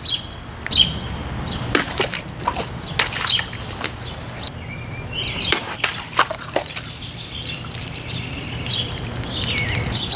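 Cold Steel Hold Out XL folding knife slashing through a water-filled plastic bottle on a wooden stump, with several sharp cracks and a spray of water. A steady, pulsing insect chirr and bird chirps run underneath.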